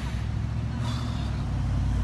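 Low, steady rumble of a motor vehicle engine, slowly swelling toward the end.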